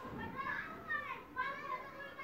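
A small child's high-pitched voice making several short vocal calls that bend up and down in pitch, in the background of a phone video call.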